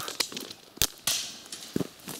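Footsteps crunching on crushed-stone gravel, with scattered sharp clicks of stone on stone; the loudest click comes a little before one second in.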